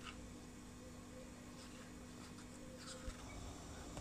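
Very quiet kitchen room tone: a faint steady hum that stops about three seconds in, with a couple of faint clicks.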